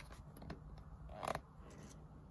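Faint rustling of a large paper instruction sheet being handled, with a brief crinkle a little past the middle and a few small ticks.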